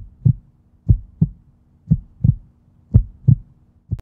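Heartbeat sound effect: low paired lub-dub thumps, about one beat a second, over a faint steady hum.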